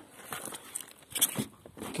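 Rustling and crackling as a hand moves over a float encrusted with goose barnacles, their shells scraping and clicking, with a louder scrape about a second in.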